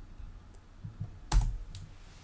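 Clicks from a computer keyboard being used: a few soft taps, then one sharper click about a second and a third in and a fainter one just after.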